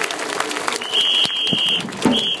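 Crowd noise and claps in a baseball cheering section, then a whistle blown in two long, steady blasts starting about a second in.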